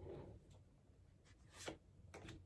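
Faint rustle of tarot cards being handled and drawn from the deck, with one soft click about one and a half seconds in.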